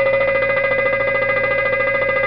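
Boeing 737 fire warning bell ringing steadily: a continuous, rapid electric-bell ring. It is the cockpit's aural alert for a fire or overheat condition.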